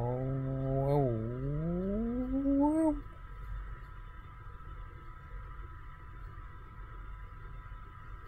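A man's long wordless vocal sound, like a drawn-out hum, held low and then sliding upward in pitch before stopping about three seconds in. After that only a faint, steady background hum with a thin whine.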